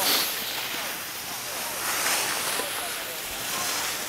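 Wind rushing over the camera microphone: a steady hiss that swells and eases a little.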